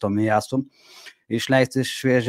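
A man talking in Lithuanian, broken by a short pause holding a brief, faint rasping noise.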